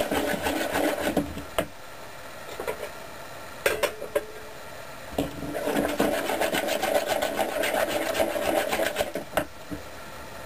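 Metal spoon beating waffle batter in a mixing bowl, with fast, even scraping strokes. The stirring stops for about four seconds in the middle, where there are a few knocks, and then starts again until near the end.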